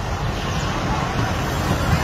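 Steady street traffic noise: a low rumble of vehicles with an even hiss of road noise.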